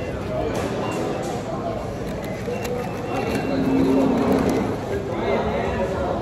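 Indistinct chatter of many people talking in a busy indoor public room, with a short held tone a little past halfway.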